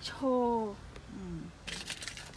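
A woman's voice speaking a couple of words in Thai.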